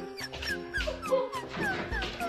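Background music with a dog whining over it in a series of short, falling whimpers.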